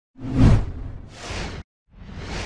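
Whoosh sound effects of an animated logo intro: a heavy swoosh peaking about half a second in, then a lighter one that cuts off sharply, and a third starting right at the end.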